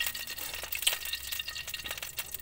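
Cooking oil being poured from a glass bottle into a wok, with scattered light clicks and clinks of glass.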